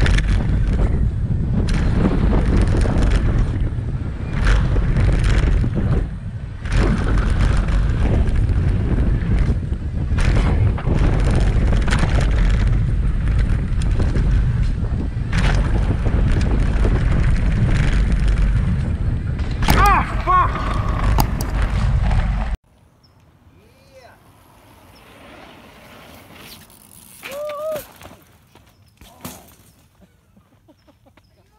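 Wind buffeting a helmet camera's microphone during a fast mountain-bike descent on a dirt trail, with the rumble and knocks of the tyres over the ground and a brief shout near the end of the ride. The loud noise cuts off suddenly about two-thirds of the way in, leaving quiet outdoor sound with a short voice.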